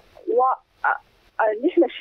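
Only speech: a woman's voice coming over a telephone line, thin and narrow in tone. Two short hesitant sounds come first, then continuous talk starts about a second and a half in.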